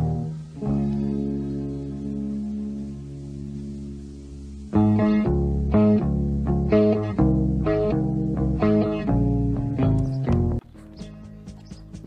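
Background music from a cowboy ballad, an instrumental passage: a long held chord, then a run of plucked notes about two a second, turning quieter near the end.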